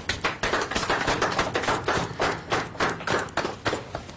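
A small group of people applauding with hand claps, the clapping thinning out near the end.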